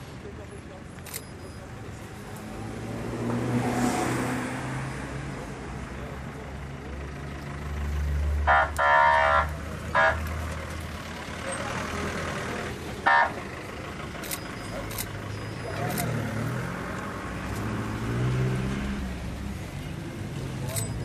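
Road traffic running past, with a car horn sounding four short blasts in the middle, the second one longer than the others. The blasts are the loudest sounds, over the low rumble of passing vehicles.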